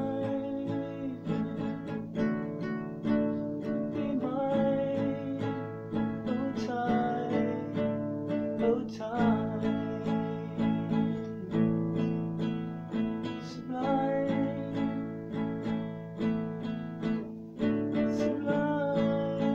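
Steel-string acoustic guitar strummed in a steady rhythm, with a man's voice singing a slow, gliding melody over it.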